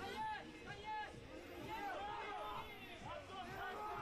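Several voices calling and shouting in short, rising and falling calls, over a low murmur of crowd chatter.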